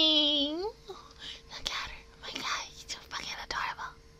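A woman's drawn-out vocal sound glides down, then up, and breaks off under a second in. It is followed by a string of short, breathy whispered sounds about twice a second.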